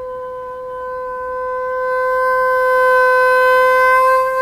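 Bassoon holding a single long note that swells louder and brighter over the second half.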